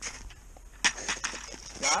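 Wind buffeting the microphone on open ice, with a handful of short sharp crunches in snow from about a second in.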